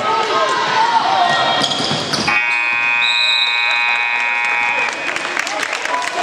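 Gymnasium scoreboard buzzer sounding the end of the first quarter: one steady, harsh multi-tone blast lasting about two and a half seconds, starting a little over two seconds in. Around it, sneakers squeak on the hardwood court and a basketball bounces.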